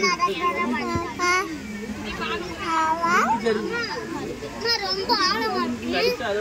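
Children's voices talking and calling out, high-pitched and continuous.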